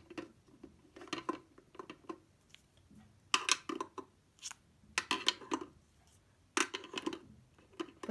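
Plastic markers being set down into a clear acrylic pen organizer: a series of light plastic clicks and clatters in several short clusters as the pens knock against each other and the compartment walls.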